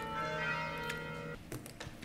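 A steady ringing tone with several pitches held together, which cuts off suddenly a little over a second in, leaving faint room noise.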